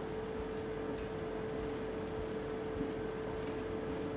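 Quiet room tone: a faint steady hiss with a constant low electrical hum, and one faint tick about three seconds in, as a marker is set on a whiteboard.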